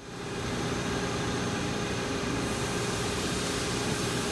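Mori Seiki ZL-25 CNC lathe running: a steady machine hum and hiss with a constant mid-pitched tone, fading in over the first half second.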